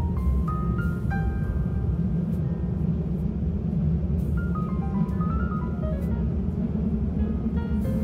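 Background music of piano-like notes in short rising runs, over a steady low rumble from the moving train.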